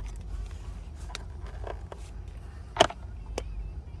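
Low steady hum with a few faint clicks scattered through it and one sharper click near three seconds in.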